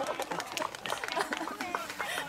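Several people's voices talking and calling out, overlapping, with scattered sharp clicks.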